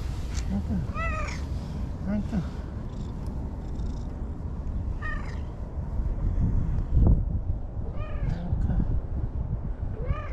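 An orange-and-white cat meowing several times, short calls that rise and fall in pitch, while being petted. A loud low thump comes about seven seconds in.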